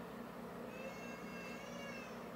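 A cat meowing: one drawn-out, high-pitched call lasting about a second, starting partway in and rising slightly at its end.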